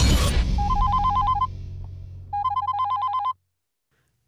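Phone ringing with an electronic two-tone trill: two rings of about a second each, a moment apart, then it cuts off suddenly. A low boom opens the moment, with a low hum held under the first ring and a half.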